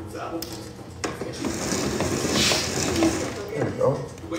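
A fabric roller blind being rolled up by hand, its roller mechanism running with a dense rattle for about two and a half seconds, starting with a click about a second in.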